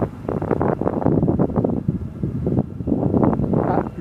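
Wind buffeting the microphone in loud gusts, easing briefly a little past the middle.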